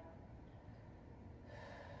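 Near silence: room tone, with a faint breath out about one and a half seconds in.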